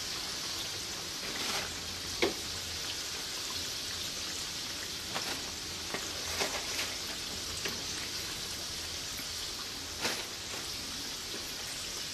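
Chicken wings deep-frying in hot oil in a pan: a steady sizzle with a few short, sharp pops and clicks now and then.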